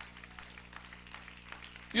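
A pause in the preaching: a low steady hum with faint scattered room sounds. The man's voice comes back right at the end.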